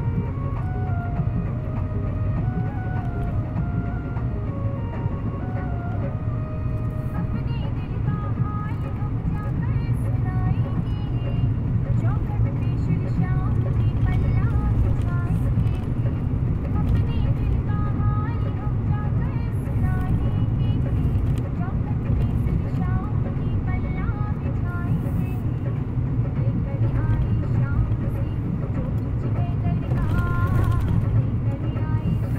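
Steady engine and road rumble heard from inside a moving Mahindra Bolero's cabin, with music and a voice playing over it.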